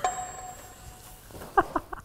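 A faint steady tone for about the first second, then a person's brief vocal outburst, a few quick voiced sounds about one and a half seconds in, the loudest moment.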